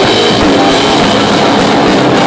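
Live rock band playing loudly: electric guitar over a drum kit with a fast, steady beat.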